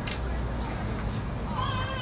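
City street noise: a steady low traffic rumble, with a high, wavering voice rising over it near the end.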